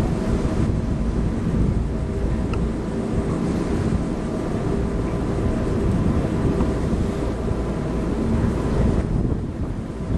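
Boat engine running steadily underway, a constant low rumble, with wind buffeting the microphone.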